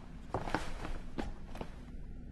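A few footsteps, four or five short irregularly spaced steps.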